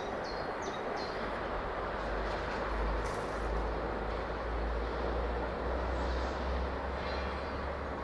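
LMS Jubilee Class 4-6-0 steam locomotive approaching under steam: a steady rushing noise with a low rumble that grows from about a second and a half in. A small bird chirps a few short falling notes in the first second.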